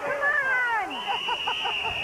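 Spectators and players yelling at the end of a play. About a second in, a referee's whistle sounds one long, steady blast to stop the play.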